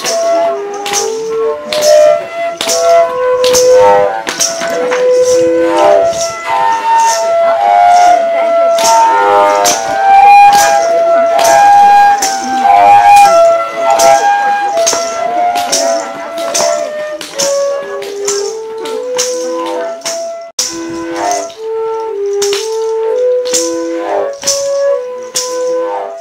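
Several long Desano yapurutu flutes played together, low held notes overlapping in a repeating melody. A rattle keeps a steady beat of about two strikes a second, with a brief break about twenty seconds in.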